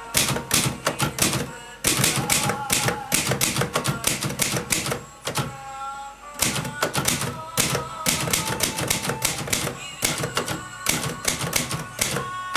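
Manual typewriter typing in quick runs of key strikes, the typebars striking the platen, with brief pauses about two seconds in and again around six seconds in.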